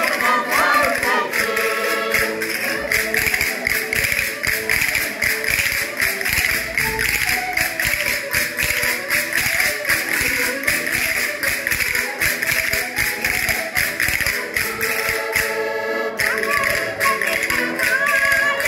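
Diatonic button accordion (concertina) playing a lively folk tune, with a group of people singing along and hand percussion clicking in a steady fast rhythm.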